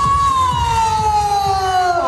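A single long high note, held and sliding slowly down in pitch after a quick rise at its start.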